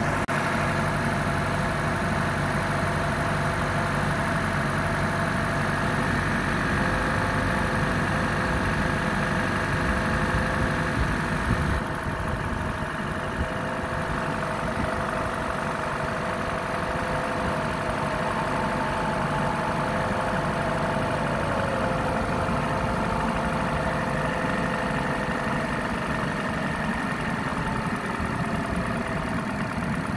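Chevy Cruze's four-cylinder engine idling steadily with the hood up, running again after a faulty coil pack. A high hiss over the engine drops away about twelve seconds in.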